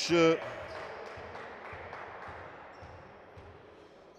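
A basketball bounced several times on a hardwood court floor, faint thuds about twice a second, as a player sets up a free throw, over a hall noise that fades away.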